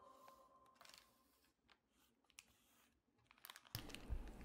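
Faint handling noise: soft crinkles of a foil anti-static bag and small clicks, with a louder crinkle and knock near the end as the bag is moved across the table.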